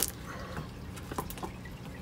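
Leather baseball glove being forced apart by hand: a sharp crack at the very start, then faint scattered crackles and ticks as the factory palm adhesive bonding the brand-new glove's layers gives way.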